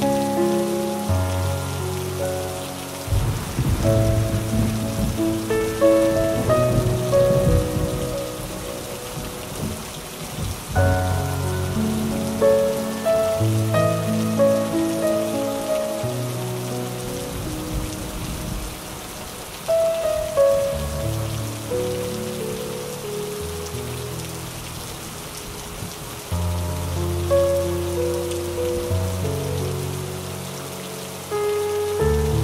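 Steady rain falling on paving stones under slow jazz piano music that plays throughout. A low rumble, typical of distant thunder, swells under the rain from about three to ten seconds in.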